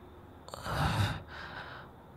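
A man's breathy, partly voiced sigh about half a second in, followed by a softer out-breath.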